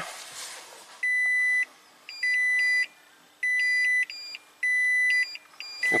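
Toyota Tundra's dashboard warning buzzer beeping at key-on, sounding with the Parking Assist Malfunction warning. From about a second in, a long high beep comes about every 1.2 seconds, each lasting roughly half a second, with short higher beeps in between.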